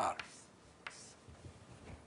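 Writing on a lecture board: a couple of short sharp taps and faint strokes, with a single spoken word right at the start.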